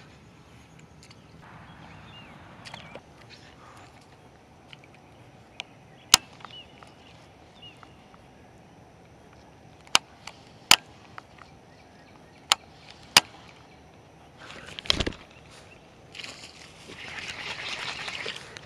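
A baitcasting reel and rod being handled: a few sharp clicks spread through the middle and a louder knock about fifteen seconds in, then the reel cranking steadily over the last second or two as a fish is reeled in.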